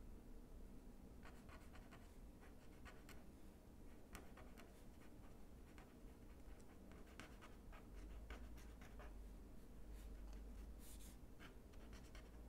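Faint scratching of an ink pen on paper, many quick short strokes as tufts of grass are drawn.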